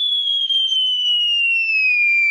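Cartoon-style falling whistle sound effect: one high tone gliding slowly downward, the sound of a dropped microphone falling.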